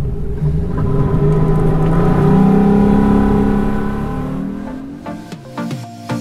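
Boat's outboard engine accelerating, rising in pitch as the hull gets up on plane, then fading out; music with a beat comes in near the end.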